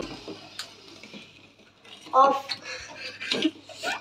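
A few faint clinks of a metal spoon against a cooking pot as a soaked ground-spice paste is stirred into chutney, with a short bit of voice a little past halfway.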